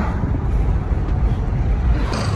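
Loud, uneven low-pitched rumbling noise.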